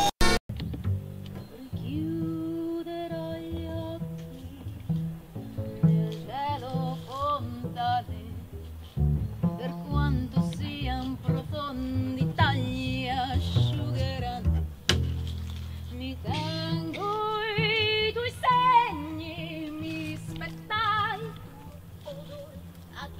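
A woman singing with wide vibrato, accompanied by a double bass playing low notes beneath her.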